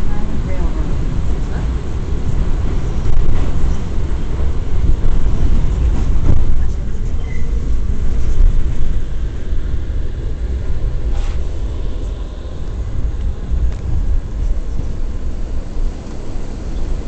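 Steady low rumble of an R179 subway car running along the track, heard from inside the car.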